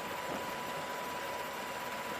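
Steady, even background hiss with a faint thin high tone running through it.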